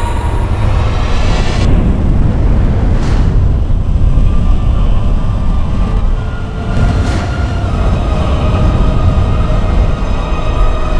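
Loud, continuous low rumbling roar of a science-fiction regeneration sound effect, with faint, eerie, sustained music tones over it in the second half.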